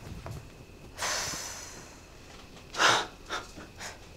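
A person breathing out heavily: a long exhale about a second in, then a shorter, sharper and louder breath just before three seconds, with a couple of small puffs after it.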